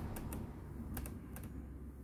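Laptop keyboard key tapped repeatedly on an Acer Aspire E15 while it boots, a string of short, sharp, faint clicks, irregularly spaced, to call up the boot menu.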